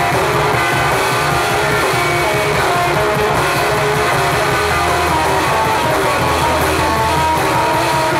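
Live rock band playing loud, dense music led by electric guitar, with a held low bass note in the middle.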